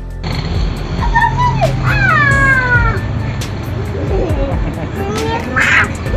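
Young children's high-pitched, wordless vocal sounds: several long squeals that slide down in pitch about a second in, then softer voice sounds and a short breathy burst near the end.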